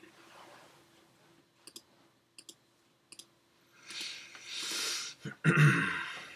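A few faint, sharp clicks in quick pairs, typical of a computer mouse being clicked to control video playback. Near the end comes a breathy exhale and then a louder throat or breath noise from the narrator.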